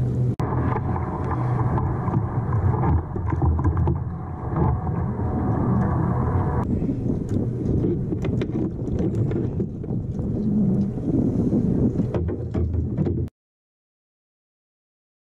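Steady low rumbling of wind buffeting an action camera's microphone on open water, with a few light knocks from handling on the kayak; the sound cuts off to silence about a second before the end.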